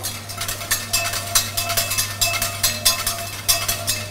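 Wire whisk beating egg yolks and a reduction in a pan over heat, several quick, regular strokes a second clicking and scraping against the bottom and sides of the pan: the yolks being whipped up airy as the base of a hollandaise sauce.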